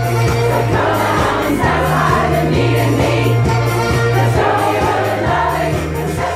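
A large, mostly female community choir singing a pop-rock song over a backing track with a bass line and a steady beat.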